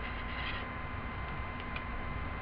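Steady electrical hum and hiss from a webcam microphone, with a thin steady high whine. A few faint light scratches come through, about half a second in and again near the end, from a Sharpie marker drawing on a paper plate.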